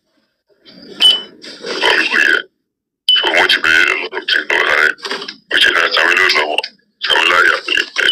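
Speech from a played-back voice-note recording, in stretches broken by abrupt dead-silent gaps.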